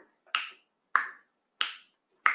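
Finger snaps at a steady pace, about one every two-thirds of a second, three of them, counting off a three-second countdown.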